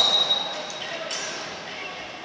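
Echoing voices calling out across a large sports hall, loudest at the start and fading, with a thin high squeak in the first second and a few faint knocks.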